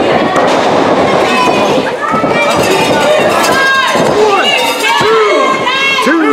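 Small crowd of wrestling spectators shouting and calling out in an echoing hall, many voices overlapping.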